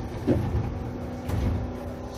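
Cab-end interior noise of a Toden 7000-class tram: a steady low hum with two dull low rumbling thumps, about a third of a second in and again about a second and a half in.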